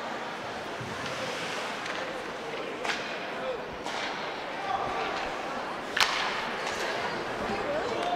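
Ice hockey play in an indoor rink: a steady murmur of voices from spectators and players, broken by three sharp clacks of stick and puck, about three, four and six seconds in, the last the loudest.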